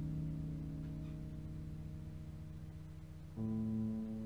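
Slow instrumental music: held notes fade away, and a new chord comes in about three and a half seconds in.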